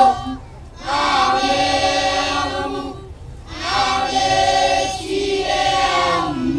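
A group of children singing a dance chant in unison, in phrases about two and a half seconds long with short breaks between them.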